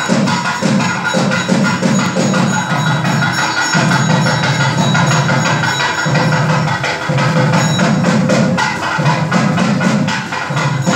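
Loud festival music led by drums and struck percussion, dense and continuous, with the low drumming swelling and breaking every second or so.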